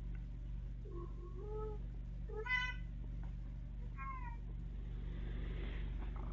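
A domestic cat meowing: a few short calls, the loudest about two and a half seconds in and the last falling in pitch. The cat makes them while carrying its fetch toy back.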